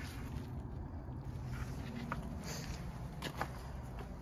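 A steady low hum with a few light ticks or steps.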